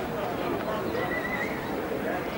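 Indistinct voices of people talking over steady background noise, with a brief high-pitched tone about a second in.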